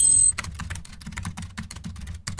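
A bright chime rings out and stops about a third of a second in, followed by rapid, irregular clicks of typing on a computer keyboard over a low hum.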